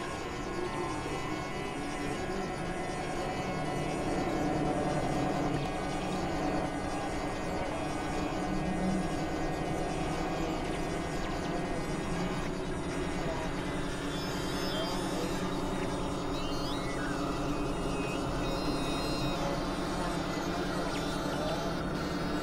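Layered experimental synthesizer drones and tones from several recordings mixed together: a dense, steady wash of many held pitches, with a few short sliding tones past the middle.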